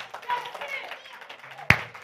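A single sharp hand clap near the end, over faint voices in the background.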